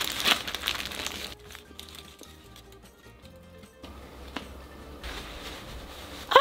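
Soft background music, with aluminium foil crinkling in about the first second as a foil-wrapped sandwich is handled.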